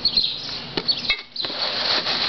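Hands rummaging through shredded paper packing in a cardboard box: a rustle with a few sharper crinkles about a second in, a brief lull, then a denser rustle near the end.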